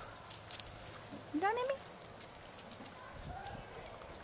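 A dog at a watermelon rind on concrete: a scatter of light clicks from claws and chewing. About a second in there is a short rising vocal sound, with a fainter one near the end.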